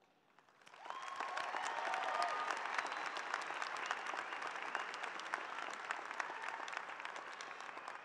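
A large crowd applauding. The clapping swells in about a second in, holds, then eases slightly toward the end.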